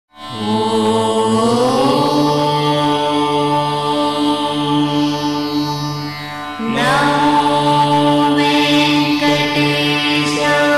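Indian devotional ident music: sustained chanted tones over a steady drone, gliding up in pitch near the start. A fresh swell with a bright shimmer comes in about seven seconds in.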